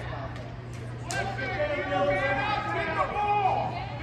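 Spectators' voices talking in an indoor arena, not clearly worded, over a steady low hum, with a sharp click about a second in.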